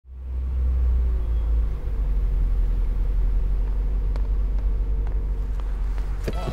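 Car engine idling: a low, steady rumble that fades in at the start, with two faint clicks in the second half.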